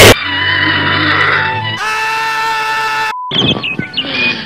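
Cut-up cartoon soundtrack music: a very loud blast at the start, then held musical tones that change about two seconds in and cut off abruptly about three seconds in, followed by short choppy snippets.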